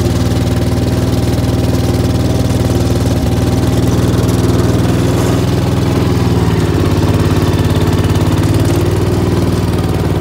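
Gravely 8163-B garden tractor engine running steadily at idle, warming up shortly after a cold start in the snow.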